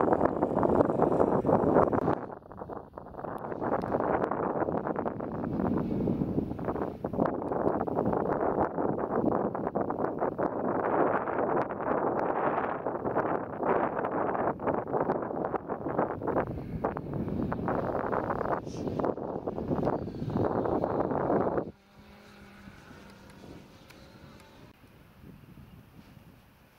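Wind buffeting the microphone: a loud, rough rumble that gusts up and down. It cuts off suddenly about 22 seconds in, leaving only a faint background.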